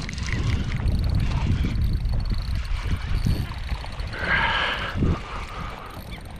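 Wind buffeting the action-camera microphone and water sloshing against a plastic kayak as a hooked snapper is brought aboard and netted, with a brief higher-pitched cry about four seconds in.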